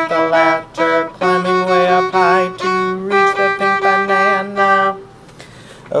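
Violin played with the bow: a run of separate single notes, a few held with vibrato, stopping about five seconds in.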